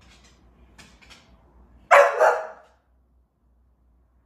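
Bull terrier giving a short double bark, two quick barks close together about two seconds in, after a few faint clicks.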